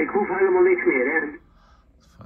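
A station's voice on 40-metre single-sideband, heard from the Kenwood TS-990 transceiver's speaker, thin and cut off above the voice band. It stops abruptly about two-thirds of the way through as the receiver is tuned off the frequency, leaving faint hiss.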